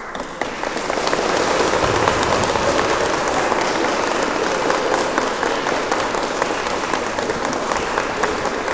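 Audience applauding: many hands clapping, starting suddenly and swelling over the first second, then a steady loud clatter.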